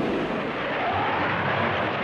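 Steady, dense rumbling roar of an aerial dogfight: jet fighter noise mixed with gunfire.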